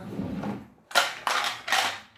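Handling noise from the plastic frame of a tri-fold LED makeup mirror as it is moved and repositioned: three short scraping, clattering bursts close together, starting about a second in.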